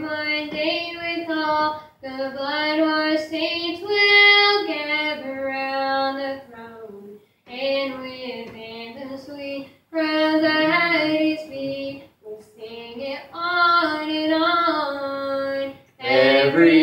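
A woman singing a slow gospel song, holding notes and stepping between them in phrases, with short breaks between the phrases.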